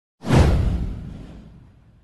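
A single whoosh sound effect with a deep low end, starting suddenly and fading out over about a second and a half.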